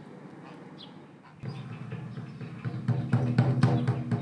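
Faint outdoor background, then about one and a half seconds in music starts abruptly: held low tones with repeated drum strikes that grow louder towards the end.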